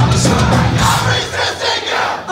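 Punk band playing live at full volume with a crowd shouting along. About a second and a half in, the bass and drums drop out in a short break while the crowd's shouts carry on.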